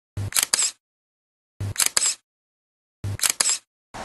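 Camera shutter sound effect clicking three times, about a second and a half apart, each a short thump followed by a sharp mechanical click.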